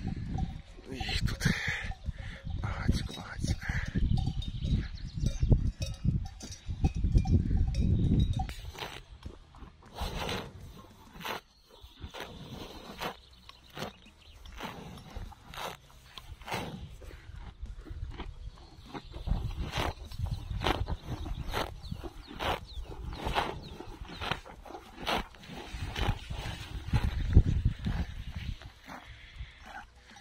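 Cows grazing at close range, tearing and chewing grass in a long irregular run of sharp crunches that begins about nine seconds in, after a stretch of low rumbling.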